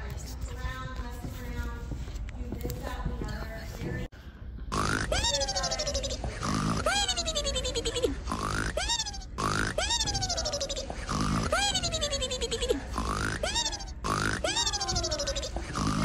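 Cartoon-style snoring starting about four seconds in: a short snort followed by a falling whistle, repeated steadily about every one and a half seconds. Faint voices come before it.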